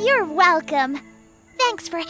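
Short, high-pitched exclamations from cartoon character voices, with a brief pause in the middle, over background music with held notes.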